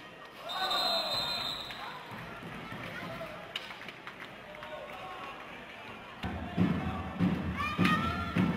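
Arena sound of roller hockey: shouting voices and a short, steady referee's whistle about half a second in, with scattered sharp knocks. About six seconds in, music with a steady thumping beat, about two beats a second, comes in.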